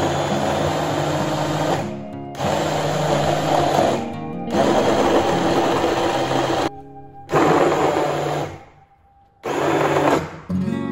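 Stainless-steel immersion blender running in runs of one to two seconds with short stops between, chopping chunks of raw beet, carrot and apple in water in a glass jar into a puree.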